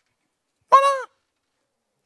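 Speech only: a man says one word, 'Voilà', once and briefly in a high, exclaiming voice, with silence around it.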